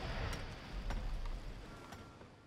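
Quiet low ambient rumble with a few soft knocks about a second apart, fading down.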